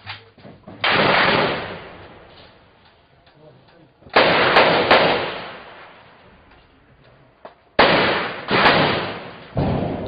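Gunshots going off in separate groups: one about a second in, three close together around four to five seconds, and two more near eight seconds, each echoing off the surrounding buildings.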